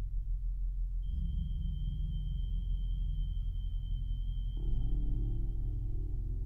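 Electronic music played on a modular synthesizer (Mutable Instruments modules with a Behringer ARP 2500): a low drone, with a thin steady high tone coming in about a second in and fading out near the end, and a fuller middle layer joining at about four and a half seconds.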